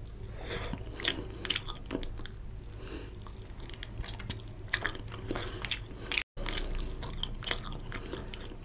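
Close-miked chewing of a handful of rice and rohu fish curry eaten by hand, with many short mouth clicks. The sound drops out for an instant about six seconds in.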